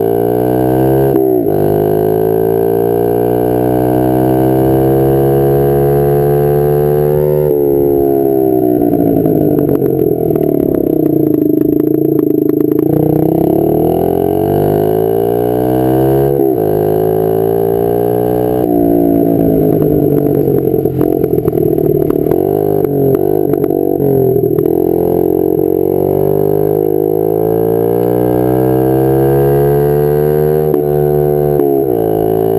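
Honda CRF50F's small single-cylinder four-stroke engine under way: its pitch climbs as it revs, then drops suddenly at each gear change, four times, and sags and holds lower for a while in the middle as it eases off.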